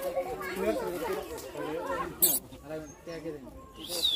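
Voices of children and adults chattering, not as clear speech, with a sharp click about halfway through and a falling whistle right at the end.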